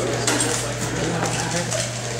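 Indistinct voices and chatter in a large room over a steady low hum, with scattered light clicks.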